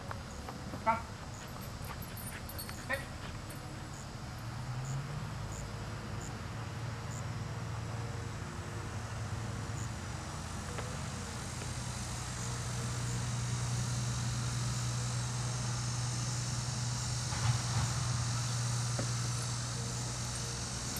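Border collie giving two short barks in the first few seconds. From about four seconds on, a steady low motor hum runs under the scene, with insects buzzing in the later part.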